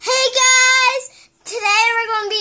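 A young boy singing out wordlessly in a high voice: one long, level held note, then after a short break a second sung phrase starting about one and a half seconds in that slides up and down in pitch.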